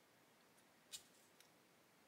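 Near silence: room tone, with one faint, short click about a second in and a fainter tick shortly after.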